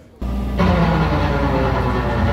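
A live band playing loud rock music on electric guitars and drums, starting abruptly about a quarter second in.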